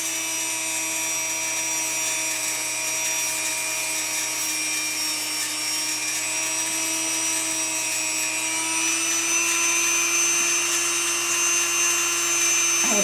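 Dremel rotary tool running at a steady pitch as it grinds down a great horned owl's talon, growing a little louder near the end.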